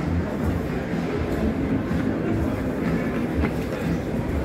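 Metro electric suburban train at the platform: a steady low rumble with uneven low pulsing.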